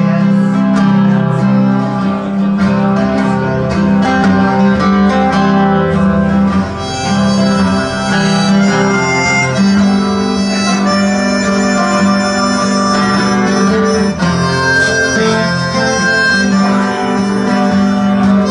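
Acoustic guitar strumming chords, joined about seven seconds in by a harmonica playing a slow melody over it: a live instrumental introduction for harmonica and guitar.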